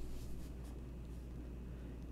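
Faint room tone with a steady low hum, and a few soft, faint rustling sounds in the first half second.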